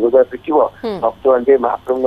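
Speech only: a news correspondent reporting in Odia over a telephone line, the voice narrow and thin.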